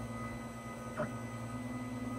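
Monoprice Maker Ultimate 3D printer's stepper motors whining steadily as the build plate moves back to its home position, with a faint click about a second in.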